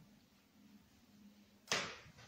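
A faint low hum in a quiet room, then near the end a single short, sharp rush of noise that fades within a fraction of a second.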